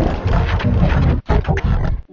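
The soundtrack of a Japanese TV commercial logo, pitch-shifted down and layered at three lower pitches (−12, −16 and −24 semitones), giving a loud, deep, distorted sound. It breaks off briefly about a second in, then carries on.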